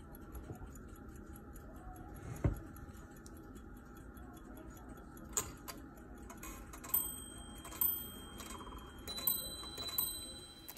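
French grand sonnerie carriage clock with its balance platform ticking fast and evenly, a low knock about two and a half seconds in as the clock is handled. From about seven seconds in, a few sharp strikes with high ringing tones sound on the clock's small nested bells.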